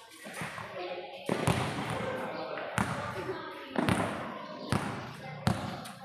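A basketball being dribbled on a concrete court: five sharp bounces, unevenly spaced about a second apart, with voices talking between them.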